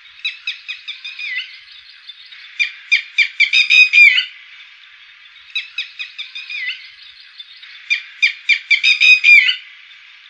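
Red-wattled lapwing calling: loud phrases of rapid, shrill, repeated notes, each phrase about a second and a half long. Four phrases come in all, one every two and a half to three seconds, over a faint steady hiss.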